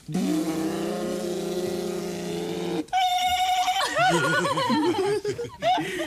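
A voice making a long steady hum that cuts off after nearly three seconds, then a higher held note and wavering, sliding vocal sounds, much like someone imitating a running engine.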